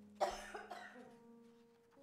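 A person coughing once, loud and close to the microphone, about a quarter second in, over soft held keyboard chords.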